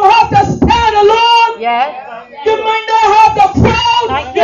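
A voice singing a melody over a steady held tone, with a softer stretch about halfway through.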